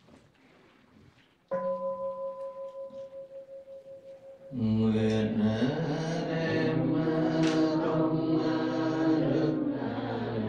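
A Buddhist bowl bell is struck once, about a second and a half in, and rings with a wavering, slowly fading tone. About three seconds later, Vietnamese Buddhist chanting begins through the microphone on long, sustained notes.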